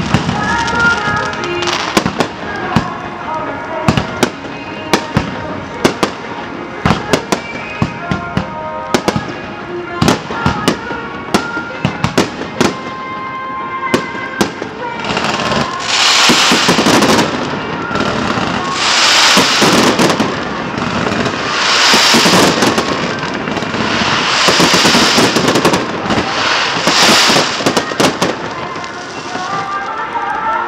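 Fireworks display: aerial shells bursting in a rapid series of sharp bangs. From about halfway, several long waves of dense crackling and hissing come as masses of shells burst together.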